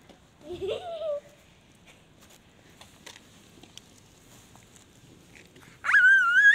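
A short vocal cry that rises and wavers about half a second in, then a long quiet stretch. Right at the end a sudden rising squeal swells into a loud, high, held cry.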